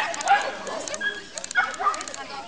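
A dog barking several times, loudest right at the start and again a moment later.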